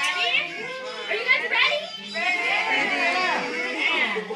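Young children's voices chattering and calling out over one another, several high-pitched voices overlapping.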